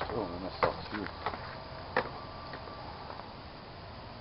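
A person's voice speaking briefly and indistinctly in the first second, then a few sharp clicks, the loudest about two seconds in, over a steady background hiss.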